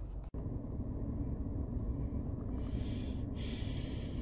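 Steady low hum of a car's cabin, broken by a brief dropout just after the start, with a soft breath about two and a half seconds in.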